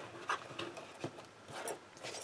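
Faint handling noise of a cardstock gift box: a few soft taps and rustles as the card lid is pressed and folded shut.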